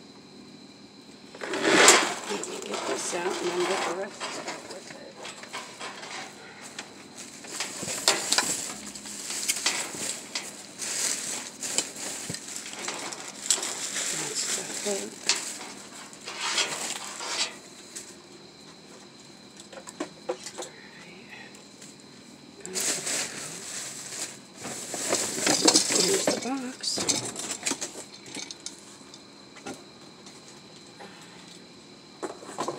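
Plastic trash bags crinkling and rustling as hands rummage through a dumpster, in several long bursts with small clinks and knocks.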